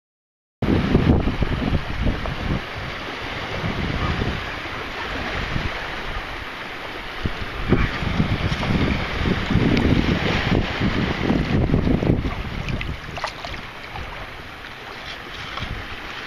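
Wind buffeting the microphone over surf washing along the shoreline, starting about half a second in and gusting unevenly, with a few faint clicks.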